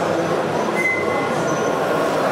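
Steady exhibition-hall din with a model diesel locomotive running slowly along its track.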